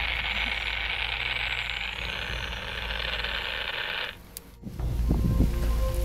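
Steady high-pitched hiss over a low rumble that cuts off abruptly about four seconds in. After a brief gap, background music with held notes and a deep bass starts.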